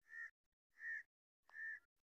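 A crow cawing faintly, three short caws about two-thirds of a second apart.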